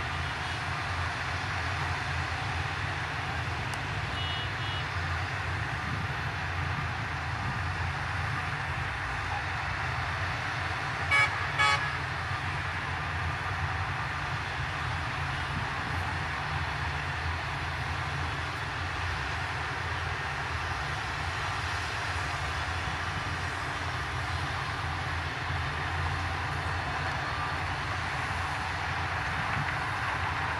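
Shantui DH17C2 bulldozer's diesel engine running steadily with a low rumble while it pushes dirt, other heavy machinery working alongside. About eleven seconds in, a vehicle horn gives two short toots.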